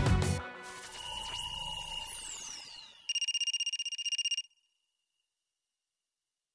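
Channel logo sting: closing music ends about half a second in, then a shimmering swoosh with a falling glide, and a short, fast-pulsing bright chime that cuts off sharply.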